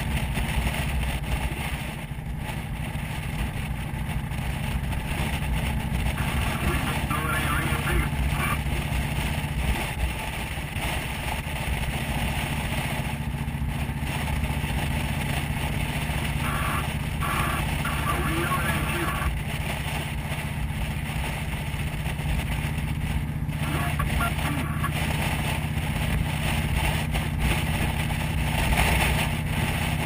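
Motorcycle engine running steadily at cruising speed, heard from on the bike, under a constant rush of wind noise.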